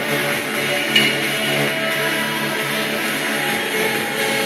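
Electronic music playing steadily, with one brief sharp knock about a second in.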